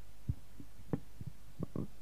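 Several dull, short thumps at irregular intervals over a steady low hum.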